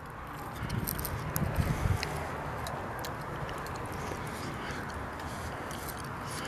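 Steady outdoor background noise with a few faint, short clicks, heaviest in a low rumble during the first two seconds.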